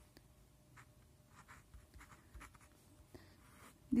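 Pen writing on paper: faint, short scratching strokes as letters and an arrow are written.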